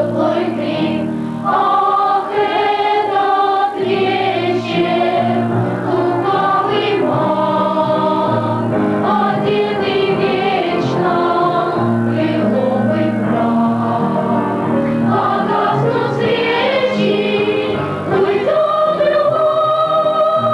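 A children's choir singing a Christmas song with piano accompaniment, the melody moving from note to note over held low notes.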